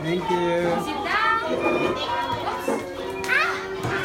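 Many young children's voices chattering and calling out over one another, with no clear words.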